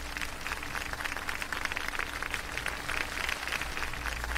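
Fast, uneven run of soft ticks from a computer mouse's scroll wheel being turned over a faint steady hum.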